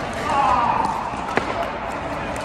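A single sharp pock of a pickleball paddle striking the plastic ball about 1.4 s in, over the steady murmur of a large indoor hall with play on other courts. Just before it comes a brief wavering sound that could be a shout or a shoe squeak.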